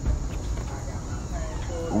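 Outdoor background noise between speakers: a steady low rumble with a faint, brief tone about one and a half seconds in.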